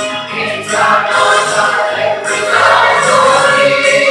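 Mixed church choir of men's and women's voices singing a gospel song, holding a long sustained note in the second half.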